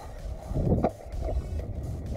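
Wind buffeting the action camera's microphone: an uneven low rumble that surges to its loudest from about half a second to just under a second in.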